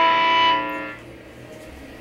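Electric guitar's last strummed chord ringing out and dying away about a second in.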